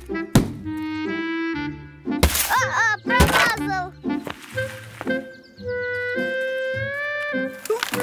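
Light cartoon background music with held notes, broken by a sharp thud about a third of a second in and another just after three seconds. Short voice-like exclamations from a cartoon character come around two to three seconds in.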